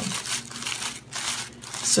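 Thin paper crinkling and rustling in irregular bursts as the layers of a handmade paper flower are pulled and fluffed by hand.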